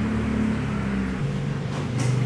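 A low, steady engine-like hum that drops slightly in pitch about a second in and again near the end.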